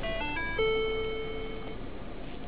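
Lincoln MKS dashboard chime: a quick run of short notes, then one held tone of about a second, signalling that Active Park Assist has finished parking the car.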